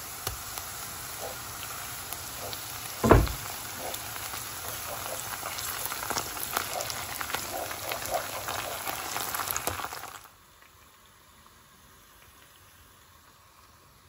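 Chopped onions frying in oil in a pot, sizzling with small crackles and pops as tomato paste is stirred in with a wooden spoon, with a single loud thump about three seconds in. The sizzling cuts off suddenly about ten seconds in, leaving only faint room sound.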